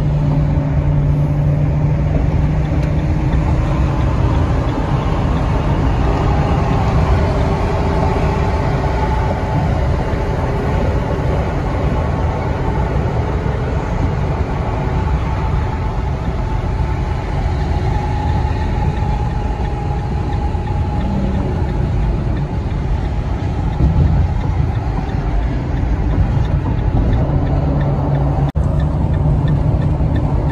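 Steady road noise inside a delivery van's cab cruising at highway speed: a continuous rush of tyre and wind noise over a low engine drone.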